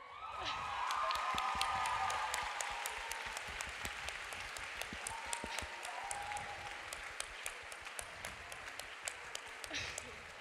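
Audience applause that swells within the first second and then slowly tapers off. Laughter and a few voices call out over the clapping in the first few seconds.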